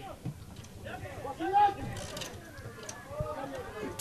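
Faint, distant voices of players and spectators calling around an open football pitch, one call rising a little louder about one and a half seconds in, with a couple of faint knocks.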